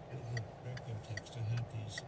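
A car's turn-signal indicator ticking steadily, about two and a half clicks a second, inside the cabin of a Volkswagen waiting to enter a roundabout. A low steady engine hum runs underneath.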